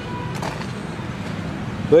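Steady outdoor background noise with no distinct event, an even hiss and rumble of open-air ambience.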